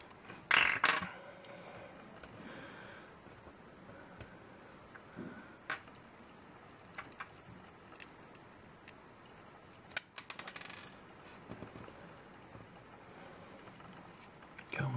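Small hardware handled by fingers: scattered light clicks and metallic taps as tiny screws, nuts and nylon standoffs are fitted to a circuit board. A brief louder rustle comes near the start, and about ten seconds in a sharp click is followed by a quick run of small clicks.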